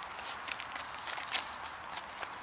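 Footsteps on loose gravel: a string of short, irregular crunches.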